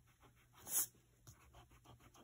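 Pencil sketching on paper: a run of short scratchy strokes, with one louder, longer stroke about a third of the way in.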